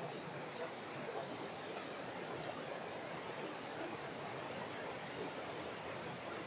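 Mountain stream running over rocks: a steady, even rush of water.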